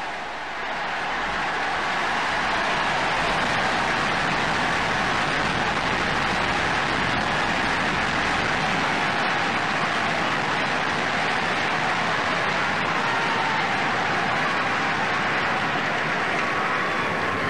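Steady rushing noise of a large crowd filling a big hall, holding level throughout with no single voice standing out.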